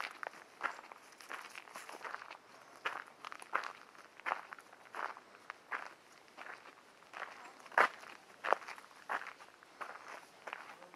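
Footsteps of someone walking at a steady pace on a dirt forest trail, about one crunching step every 0.7 seconds, with one sharper step near the 8-second mark.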